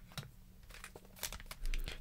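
The foil wrapper of a 2020-21 Panini Donruss basketball card pack crinkling as it is picked up and handled. It starts with a few faint ticks as cards are set down, and the crackles grow denser and louder in the second half.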